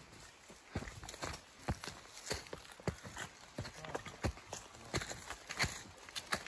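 Footsteps of people walking over dry fallen leaves and twigs, crunching in an uneven rhythm of two or three steps a second.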